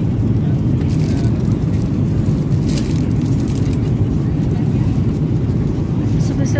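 Steady airliner cabin drone from the engines and airflow in flight, a constant low rumble. A plastic snack wrapper crinkles faintly a couple of times.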